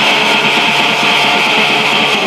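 Raw black metal music: loud, heavily distorted electric guitar in a dense, lo-fi mix that stays even and unbroken, with fast, short strokes running through it.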